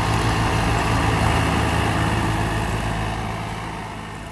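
Farmtrac 60 tractor's diesel engine running steadily under load as it pulls a trolley heaped with soil through sand. The engine sound fades gradually in the second half.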